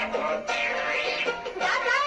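Bengali children's song about frogs playing: a singing voice over a musical backing.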